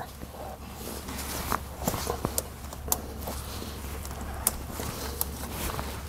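Konig self-tensioning snow chain being pulled tight: scattered sharp clicks from the ratchet tensioner and the steel links, over faint handling noise.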